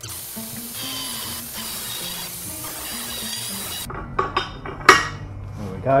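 Angle grinder cutting through a steel die blank: a steady high hiss with a whine, cutting off suddenly about four seconds in. Then several sharp metal clinks and knocks as steel dies are set into a guillotine tool, the loudest just before the five-second mark.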